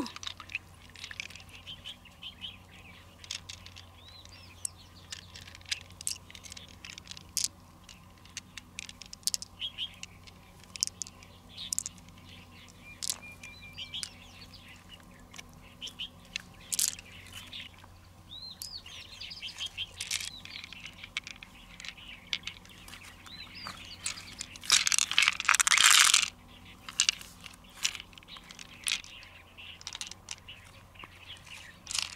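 Close-up hand handling of a giant freshwater mussel as pearls are picked out of its flesh: scattered sharp clicks and ticks, with a longer, louder rustling burst a few seconds before the end. Birds chirp in the background.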